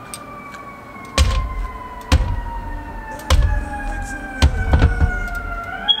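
An emergency-vehicle siren wailing outside, its pitch sliding slowly down and starting to rise again near the end. Over it, about six sharp knocks and thuds as chunks of banana drop into a plastic blender cup of ice.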